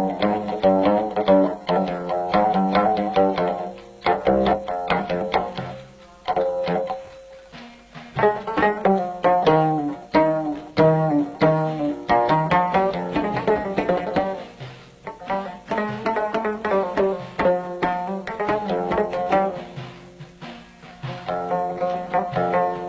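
Instrumental Middle Atlas Amazigh music on the loutar, a plucked lute, playing fast runs of short plucked notes. The playing thins and drops in level for a few seconds, about four seconds in, then picks up again.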